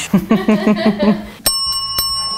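Laughter, then one sharp strike of a chrome desk bell about one and a half seconds in, ringing on with a clear high tone that slowly fades.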